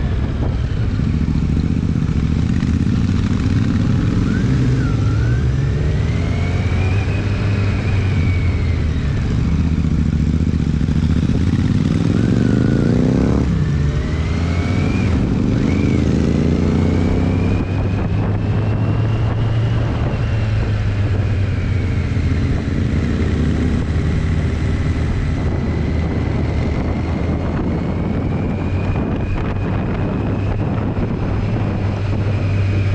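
Kawasaki Z900's inline-four engine pulling at low road speed. The revs climb for several seconds, drop abruptly about halfway through at a gear change or throttle close, then climb again.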